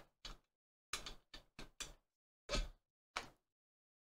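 A string of short, separate clicks and knocks from a black plastic project box being handled as its faceplate screws are taken out and set down. The loudest knock comes about two and a half seconds in, and the sounds stop about a second later.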